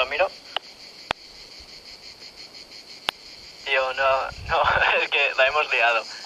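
Insects chirring steadily in a high, even pitch, with two sharp clicks about one and three seconds in. A person's voice calls out loudly over the last two seconds.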